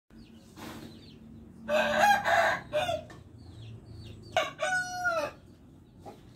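Rooster crowing twice: a rough, hoarse crow about two seconds in, then a longer, clearer crow near the end that drops in pitch as it finishes.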